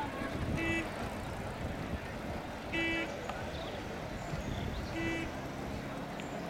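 Three short horn toots at a regatta course, evenly spaced about two seconds apart, over a steady hubbub of outdoor background noise.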